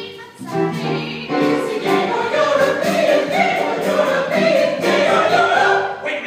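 Choir singing together, building to a loud sustained passage over the last few seconds that breaks off sharply at the very end.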